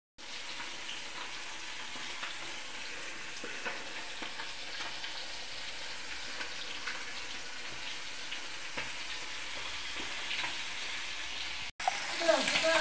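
Hot cooking oil sizzling steadily in a pan as food fries, with scattered small crackles and pops.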